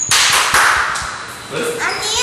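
A loud hissing burst, about a second long, that fades away; a child's voice follows near the end.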